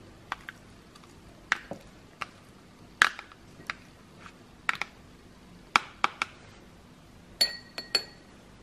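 A spoon clinking and tapping irregularly against a small ceramic dish and a plastic tub while scooping out a chopped onion-garlic paste, about a dozen sharp clinks. Near the end one strike on the dish leaves a brief ringing.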